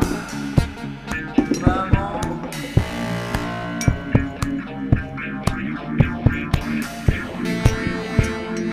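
Rock band playing an instrumental passage: a drum kit keeping a steady beat under bass and electric guitar.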